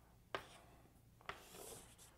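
Chalk on a blackboard, faint: two light taps as the chalk meets the board, about a third of a second in and again just after a second, then a soft scratch as a line is drawn near the end.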